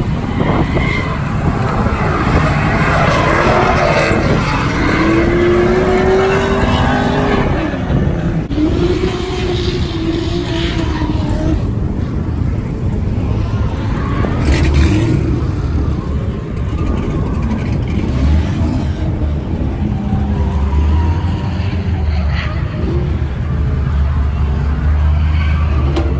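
Drift cars running on the track: a dense roar of engines and tyres, with engine notes sweeping up and down in the first half. Past the middle, a low steady rumble sets in.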